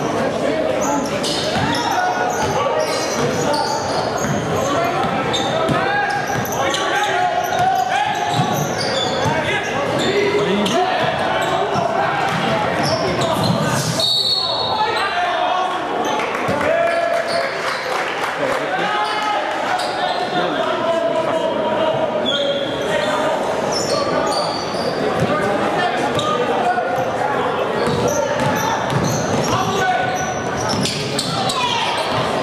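Crowd noise in a large, echoing gym during a basketball game: many spectators talking and calling out over a basketball being dribbled on the hardwood court.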